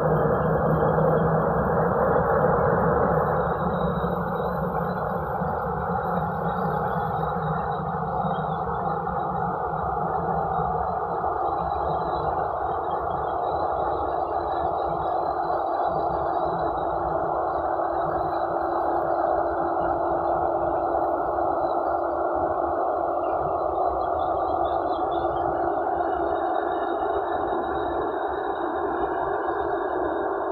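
Boeing 737 jet engines running at low power while the airliner taxis onto the runway: a steady, muffled rush, with a low steady hum joining about halfway through.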